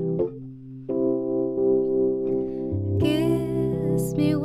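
Keyboard holding sustained chords in a slow ballad after a brief dip, with a woman's singing voice coming back in about three seconds in.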